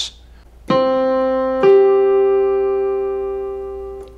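Yamaha digital keyboard on a piano voice playing a perfect fifth, C then G. The C sounds about two-thirds of a second in and the G above it joins about a second later. Both notes are held and ring together, slowly fading.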